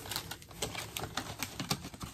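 Craft supplies and packaged items being shifted around on a tabletop to clear space: a quick, irregular run of light clicks and taps.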